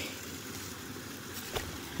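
Steady, low outdoor background noise in a pause between words, with a single faint knock about one and a half seconds in.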